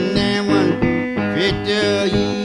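Hill country blues guitar playing in a recorded blues song, with no singing at this point.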